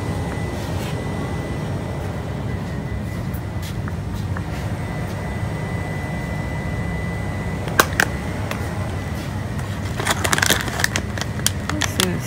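Steady low rumble of a shop's background ambience with a faint high steady tone. There is a single click a little before eight seconds in, then a cluster of clicks and rustling near the end as a bagged product is handled off the shelf.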